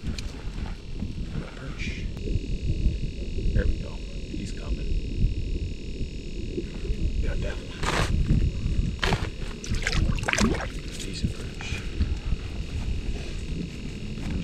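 Wind buffeting the microphone, a steady low rumble, with several short clicks and rustles between about eight and ten and a half seconds in.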